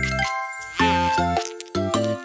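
Upbeat children's song music: bright chiming notes over short, bouncing bass notes in a steady beat.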